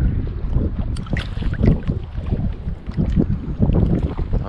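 Wind noise on the microphone over choppy water, with small waves lapping and splashing irregularly against a camera held at the water's surface.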